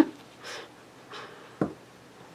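A woman's laughter trailing off in soft breathy exhales, with a short sharp sound about one and a half seconds in.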